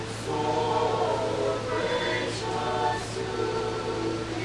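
A choir singing slow, held notes, with a steady low hum underneath.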